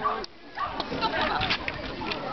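A dog barking in short barks, over people's voices.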